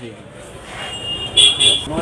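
Busy market background noise in a lull between speech, with a short high beeping tone in the middle that pulses twice.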